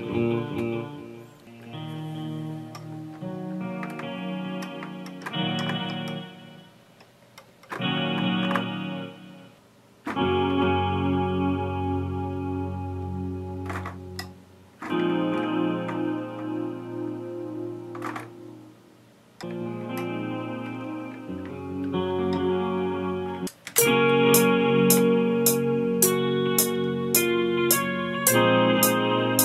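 Sampled guitar played from a MIDI keyboard in FL Studio, heard as short phrases of a few seconds that stop and start again while a guitar sample is being tried out. Near the end a louder phrase runs on with a steady tick about twice a second.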